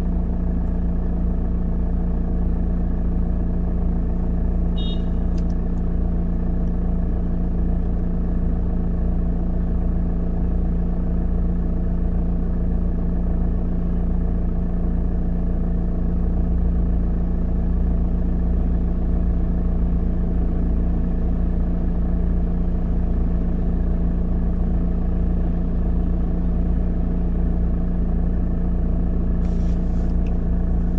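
Car engine idling steadily, a constant low hum heard from inside the cabin while the car waits at a red light.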